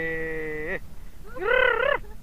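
Excited wordless yells from a man as a fish is hooked on a popper: one long held shout that breaks off about three quarters of a second in, then a shorter wavering shout near the end.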